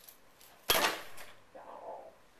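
A single sharp clack of a hard object knocked or set down, a little under a second in, with a short ringing tail.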